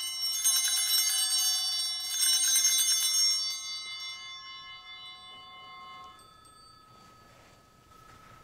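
Altar bells rung at the elevation of the consecrated host: shaken again about half a second and two seconds in, then left to ring out and fade over several seconds.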